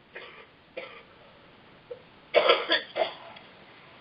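A person coughing: two short coughs in the first second, then a louder run of coughs about two and a half seconds in.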